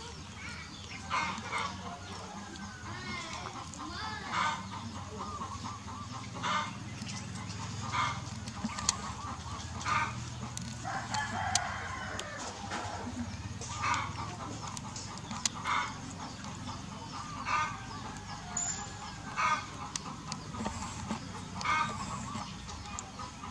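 Poultry calling: short calls repeat every one to two seconds, with one longer call around the middle.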